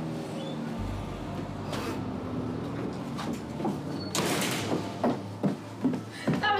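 A glass-paned shop door being handled, with a short loud rush of noise about four seconds in, over a steady low hum.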